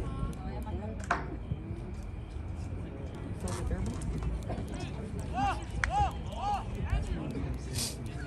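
Outdoor ambience of a soccer game: scattered distant voices of players and spectators over a low rumble of wind and handling on the microphone. About halfway through, someone gives three short rising-and-falling shouts.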